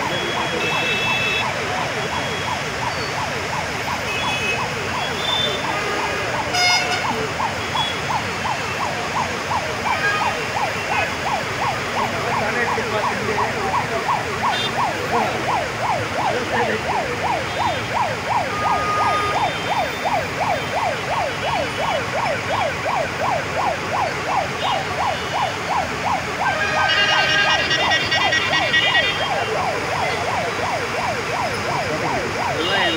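Emergency vehicle siren in a fast rising-and-falling yelp, a few cycles a second, sounding on and on over the noise of heavy road traffic. Car horns toot now and then, with a longer, louder horn blast near the end.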